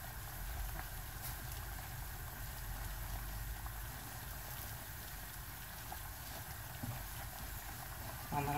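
Hands working flour into soft dough in a large metal pot: faint rubbing and a few light ticks against the pot, over a steady low hum.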